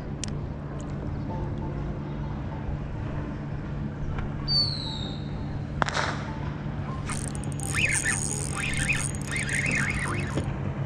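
Steady low hum of motorboat engines on the lake, with a short falling bird whistle near the middle. From about seven seconds in comes a high, steady whir as a spinning reel is cranked in on a hooked fish.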